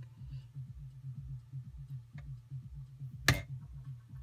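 A dance track plays faintly from a Pioneer CDJ-2000NXS2, mostly its bass and kick drum at about two beats a second. A sharp click a little over three seconds in is a button being pressed on the player, and there is a fainter tick before it.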